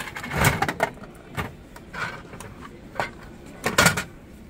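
Dial of a gashapon capsule-toy machine turned by hand, the mechanism clicking about once a second, then a louder plastic clunk near the end as the capsule drops into the dispensing tray.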